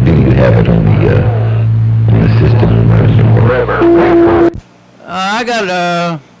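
Incoming CB radio transmission over the radio's speaker: music and echo-laden voice over a steady low hum. It ends with a short steady beep and the signal cuts off abruptly about four and a half seconds in, marking the end of that transmission. A brief voiced sound follows near the end.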